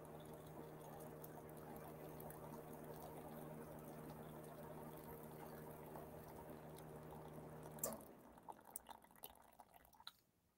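Hot water trickling in a thin stream from a stainless steel pot into a glass measuring cup of melted oils and emulsifying wax, the water phase being added to the oil phase of a cream. The faint steady pour stops about eight seconds in, followed by a few light clicks.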